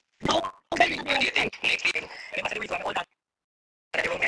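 A person's voice, rough and croaky, in three broken stretches of talk, cutting out abruptly about a second before the end.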